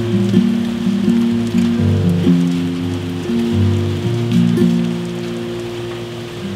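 Yamaha acoustic guitar with a capo, picked without singing, single notes changing every half second or so and getting a little quieter toward the end. A steady patter of rain sits under it.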